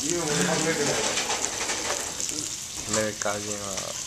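Beef slices and vegetables frying in oil in a small individual tabletop grill pan, a steady high sizzle.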